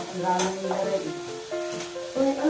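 Pork belly sizzling in a hot grill pan, with utensils stirring and a short clatter about half a second in, under background music with a stepping melody.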